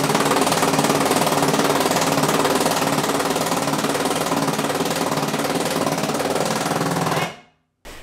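Power impact wrench hammering steadily as it drives a trailer hitch's mounting bolts tight, then cutting off suddenly about seven seconds in.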